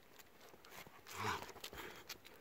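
Two golden retrievers playing and scuffling on a dirt path. A little past a second in, one of them gives a short, low vocal grumble, with paw scuffs and clicks around it.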